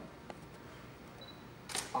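A camera shutter firing once, a short sharp click near the end, over faint room tone.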